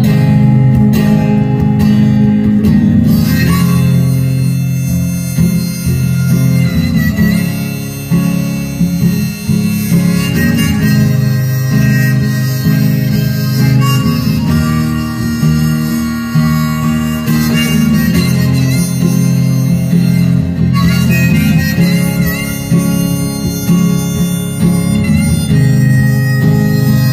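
Harmonica played from a neck rack, carrying the melody over a strummed acoustic guitar.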